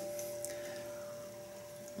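An electric guitar chord on a Squier Bullet Strat rings out faintly through the amp as a few steady notes fading slowly. The chord is going sharp because the string height at the nut is too high.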